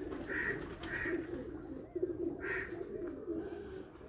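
Domestic pigeons cooing quietly and continuously in the loft, with a few short higher-pitched sounds about half a second, one second and two and a half seconds in.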